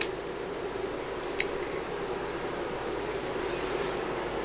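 Steady low hum over background hiss, with a faint click about a second and a half in.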